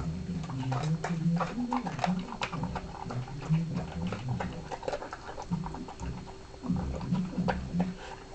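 Pembroke Welsh Corgi eating fast from a ceramic bowl: a quick, uneven run of crunching and clicks from its mouth and the bowl, over low rough sounds from its mouth and nose.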